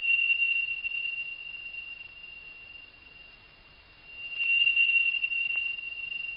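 A steady high-pitched whine on one unchanging pitch. It is loud at first, fades away through the middle, and swells again about four seconds in.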